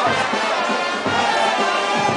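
Music with brass instruments playing a melody at a steady loudness.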